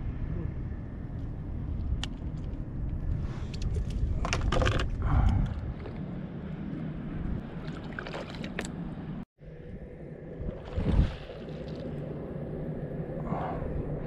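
A released largemouth bass splashing back into the water beside a boat about eight seconds in, after a few knocks and handling sounds, over a steady low rumble.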